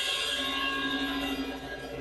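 Drum-kit cymbals left ringing after the last hit, their shimmer slowly dying away, with a steady low hum coming in shortly after the start.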